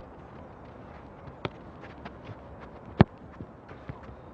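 Light footsteps and small taps, with one sharp, loud strike of a soccer ball about three seconds in and a softer knock about a second and a half in.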